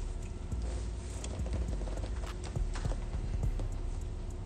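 Scattered light clicks and knocks of objects being handled on a tabletop, over a low background rumble.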